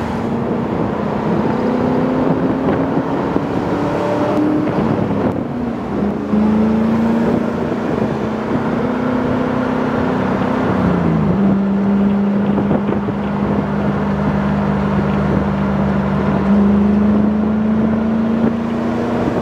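A car at highway speed: a steady engine drone over tyre and wind noise. The pitch steps a few times, with a brief dip about eleven seconds in and a rise near the end.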